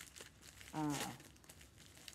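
Small plastic packet crinkling as it is handled, in a scatter of quick, irregular rustles.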